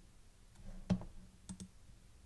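A few faint computer mouse clicks, the loudest about a second in, over quiet room tone.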